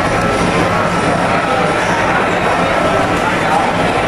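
Hubbub of a crowded eatery: many people talking at once over a steady background din.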